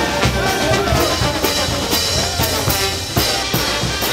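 Festive brass band music with saxophones, tubas and a drum kit keeping a steady beat.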